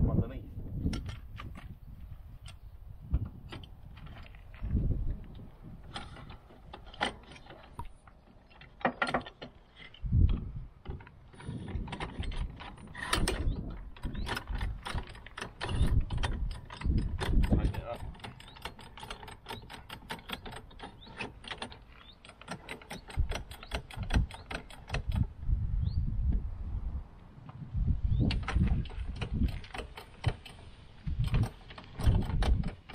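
Kartt caravan jockey wheel being fitted and wound down by its crank handle: runs of rapid, evenly spaced metallic clicks from the winding mechanism, with occasional heavier knocks as the wheel and clamp are handled.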